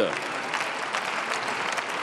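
Members of parliament applauding: many hands clapping steadily in a dense patter.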